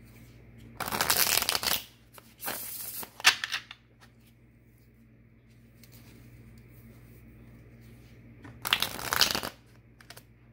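A tarot deck being shuffled by hand in three short bouts: one about a second in, one around three seconds, and one near the end.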